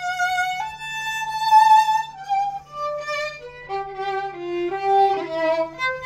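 Solo violin played with the bow in a free improvisation: long high notes with vibrato for about two seconds, then a falling line of shorter notes down into the lower register.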